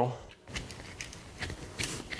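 Screwdriver blade scraping along inside the folded edge of a sheet-metal drive cleat as it is pried open, making light irregular metal scraping with a few sharp clicks near the end.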